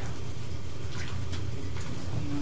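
Room tone: a steady low hum with a faint hiss over it and a few faint clicks.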